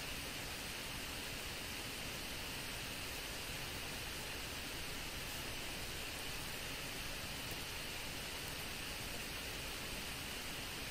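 Steady, even hiss of background noise, the recording's noise floor, with no other sound standing out.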